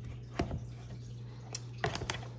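A few small clicks and scrapes of female spade connectors being pushed onto a 12 V battery's terminals, about half a second in and again near the end, over a low steady hum.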